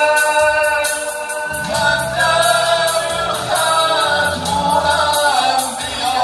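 Male singers performing an Azerbaijani Islamic devotional song (mevlud) in a group, holding long sliding notes over an electronic keyboard accompaniment with a steady beat.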